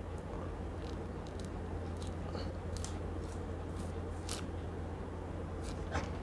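An orange being peeled by hand: faint, scattered crackles and small tearing sounds as the peel is pulled away from the fruit, over a steady low hum.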